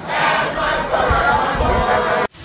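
A large crowd of marching protesters chanting together, many voices at once.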